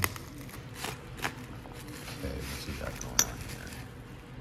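Hands unwrapping a small honing shoe from bubble wrap on a workbench: light crinkling with a few sharp clicks and clinks of small metal parts, the sharpest about three seconds in.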